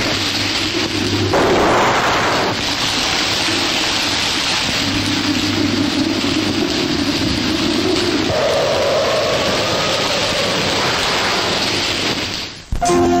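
Heavy, steady rain-like hiss with low rumbling swells, as of a thunderstorm.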